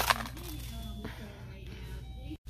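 Faint background music playing over a low steady hum, with a short sharp click right at the start.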